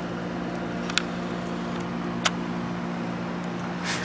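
Steady mechanical hum with a constant low tone, like a running fan or motor, with two faint clicks about a second and about two seconds in.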